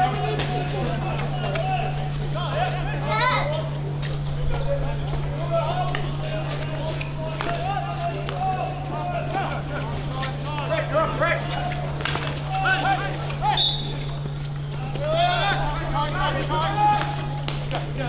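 Field hockey players shouting and calling to each other across the pitch, distant and unintelligible, over a steady low hum, with a few sharp clicks.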